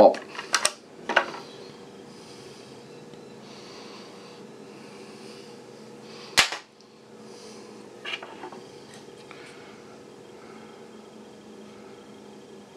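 Handling noise from a computer motherboard being moved about on a wooden desk: a few light clicks and taps, with one sharp click about six seconds in, over a steady low hum.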